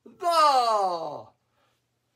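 A man's voice calling out one drawn-out syllable, its pitch sliding steadily down over about a second, as he spells a word aloud.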